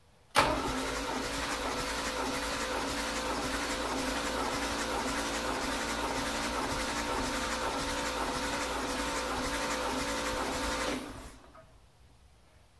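Toyota FJ40 Land Cruiser's inline-six engine cranked over by the starter for a compression test of the number four cylinder, an even, rhythmic churning that starts suddenly and dies away near the end. The cylinder's gauge reads about 121 psi, acceptable at altitude after a valve adjustment.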